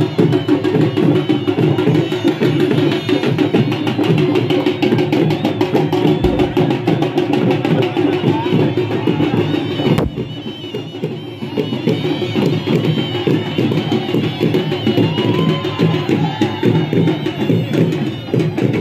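Music led by loud, fast, steady drumming and other percussion, with voices in the mix. It dips briefly about ten seconds in, then goes on as before.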